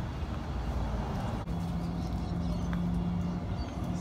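Steady low outdoor rumble with a steady low hum in the middle, and a single sharp click about a second and a half in.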